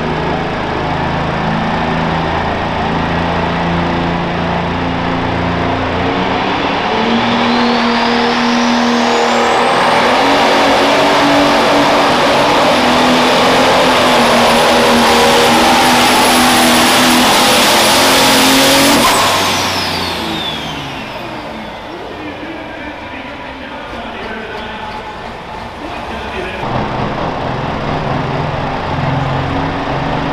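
Pro Stock pulling tractor's turbocharged diesel engine at full power down the track. Its note builds over the first several seconds, with a high whine that climbs and then holds. About two-thirds of the way through, the sound drops away sharply as the power comes off at the end of the pull, and near the end another tractor's engine runs at low speed.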